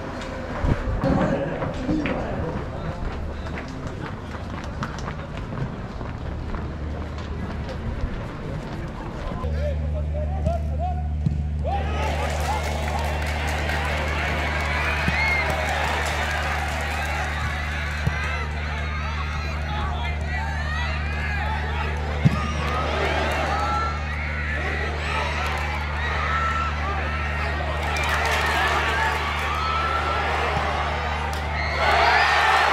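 Football stadium crowd during a match: many voices shouting and chanting together over a steady low hum, with the odd sharp knock. It comes in after a few seconds of scattered voices.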